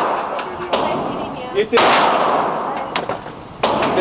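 9mm Glock 19C pistol, a ported compact, fired on an indoor range: a few sharp shots about a second apart, each followed by a long echo off the range walls.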